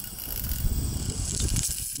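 A zip-line trolley running along the cable, with wind rushing over the helmet-mounted camera's microphone. The rushing grows steadily louder through the ride.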